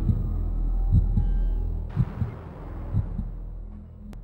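Slow heartbeat sound effect in an eerie soundtrack: paired low thumps about once a second over a steady low droning hum, fading out. A soft hiss swells in about halfway through and dies away.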